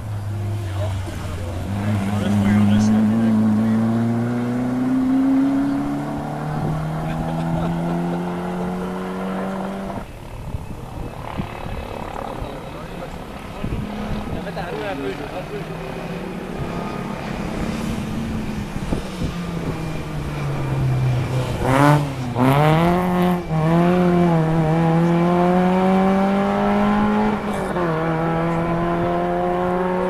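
Rally car engines running hard on a closed stage, heard in two separate passes. The first car accelerates with a steadily rising note and one upshift, cut off abruptly about ten seconds in. The second car runs at high revs, drops in pitch as it brakes and downshifts with sharp crackles a little past two-thirds of the way through, then accelerates away with its note climbing again through another upshift.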